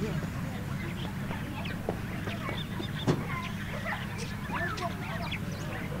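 A busy chorus of many birds chirping and calling over a steady low hum, with two sharp knocks, the louder about three seconds in.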